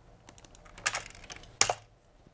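Typing on a computer keyboard: a quick run of key clicks, with two louder clicks about a second in and near the end.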